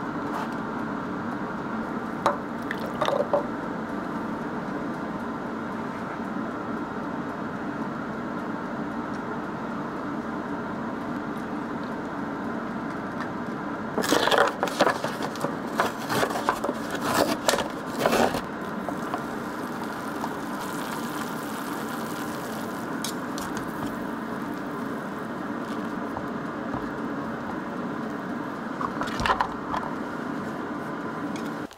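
A cup-noodle's paper lid is peeled back and its packaging handled, with bursts of crackling and rustling about halfway through. After that comes a fainter hiss of water being poured into the cup. A steady low hum runs underneath.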